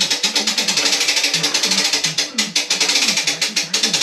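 Rapid, even ratcheting clicks of a hand-cranked winch on a material lift, wound steadily as it raises a steel beam into the wall opening.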